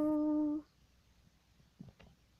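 A woman's unaccompanied voice holds the song's final note, steady and unwavering, then stops abruptly about half a second in. Near silence follows, with a faint click near the end.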